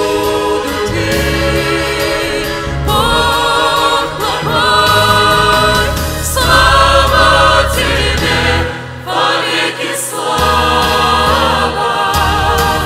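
Mixed church choir singing a Russian worship song over a steady low bass accompaniment. The bass drops out for about a second and a half near nine seconds in.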